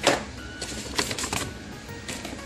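Handling noise: a few light clicks and taps of plastic products and a paper shopping bag being moved on a table.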